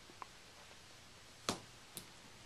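Faint steady hiss, broken by a light tick about a quarter second in, a sharp click about a second and a half in, and a second, smaller click half a second later.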